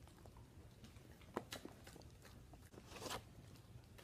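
Faint crunching of a husky chewing a dog treat, a few sharp clicks about a second and a half in, with a short rustle near the three-second mark.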